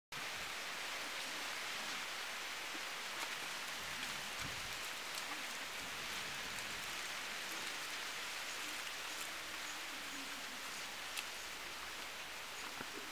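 Steady, even hiss of outdoor field background noise, with a few faint clicks.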